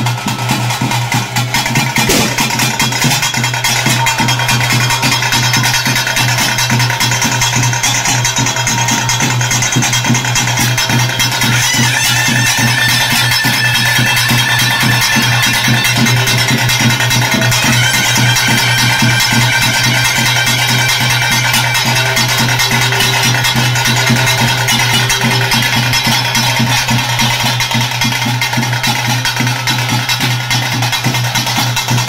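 Loud traditional bhuta kola ritual music: fast, dense drumming under a sustained melody line, running without a break.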